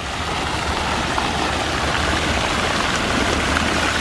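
Fountain jets splashing steadily into a shallow stone basin, a continuous rush of falling water.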